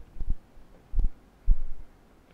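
A few short, dull thumps about half a second apart: keystrokes on a computer keyboard, finishing a number and pressing Enter, picked up as knocks through the desk.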